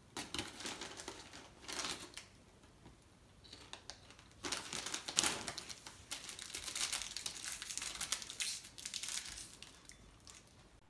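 Crinkling of plastic snack bags being handled, in short bursts at first and then a longer stretch of crinkling through the second half.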